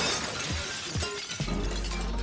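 Glass shattering in a burst of gunfire, followed by a few sharp knocks about half a second apart, over background music.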